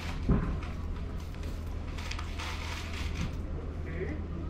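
Outdoor market background: a steady low rumble, a single sharp thump about a third of a second in, and rustling, crinkling noise around the middle.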